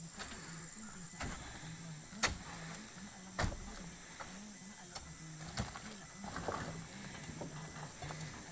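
Scattered knocks and thuds of oil palm fruit bunches being handled and dropped in the bed of a pickup truck, about five separate hits with the loudest a couple of seconds in, over a faint low hum that wavers in pitch.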